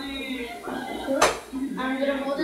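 Cutlery and dishes clinking on a dinner table, with one sharp clink a little past a second in.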